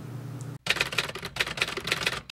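Typewriter keys clacking in a rapid run as a sound effect, starting about half a second in and stopping abruptly.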